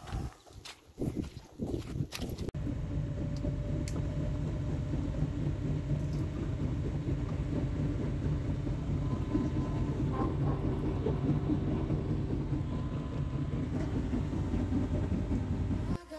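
Interior of a moving passenger train: a steady low rumble of the carriage running along the track. It sets in about two and a half seconds in, after a few short scattered sounds.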